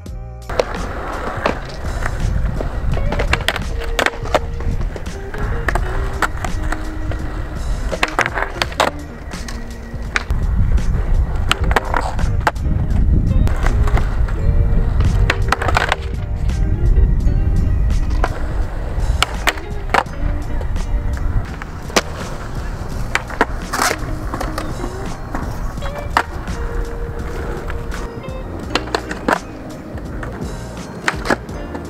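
Skateboard wheels rolling on concrete, with repeated sharp clacks of the board popping, landing and hitting a ledge. The rolling is loudest in the middle stretch. Background music plays under it.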